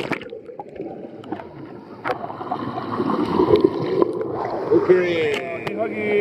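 Muffled underwater sound of a person plunging into a swimming pool, heard through a submerged camera: bubbling and gurgling water with scattered sharp clicks.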